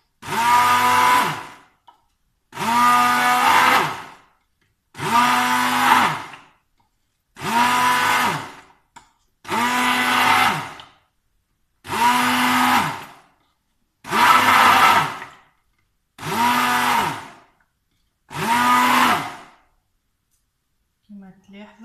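Hand-held immersion blender pulsed in a glass jug of homemade cheese curd, switched on and off nine times in short bursts of about a second and a half. The motor's pitch rises as each burst starts and falls as it stops. It is blending the curd with butter into a smooth cream cheese.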